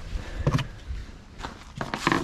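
Footsteps and rubbing handling noise from a handheld camera, with one short vocal sound about half a second in.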